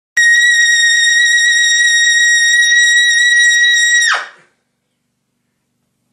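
Trumpet playing a single loud, very high note held steady for about four seconds, then ending in a quick downward fall in pitch.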